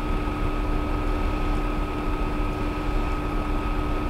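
Steady background noise: an even hiss and low rumble with a constant low hum and a higher steady whine, and nothing starting or stopping.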